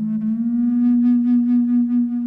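Sub bass flute playing one long, low held note after a slight upward bend into it at the start, breathy and rich in overtones.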